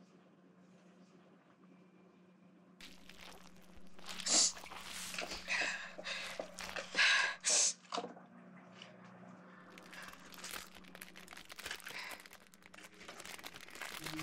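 Clear plastic bag crinkling and crackling as it is handled and pulled out of a wooden box. The sounds come in loud bursts from about four to eight seconds in, then a lighter, steady crackling. Before that there are a few seconds of near quiet with a faint low hum.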